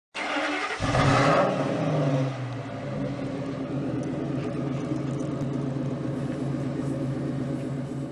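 Ford F-250's V10 engine revving briefly about a second in, the pitch falling away as it settles into a steady idle.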